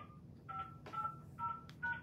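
Touch-tone (DTMF) keypad beeps from a phone on speaker, about five key presses in quick succession, each a short two-note tone, as a conference call is dialed back in. A single click falls between the last two beeps.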